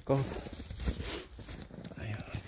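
Footsteps crunching in snow, with crinkly rustling.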